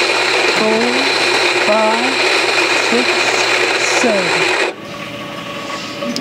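Electric coffee grinder running steadily as it grinds espresso beans, then cutting off abruptly near the end; the grind is being timed by a man counting aloud over it.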